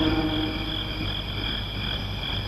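A soundtrack's night ambience of frog-like croaking under a steady, high, insect-like whine, with no voice over it.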